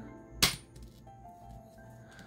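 A single sharp click or tap about half a second in, then faint background music.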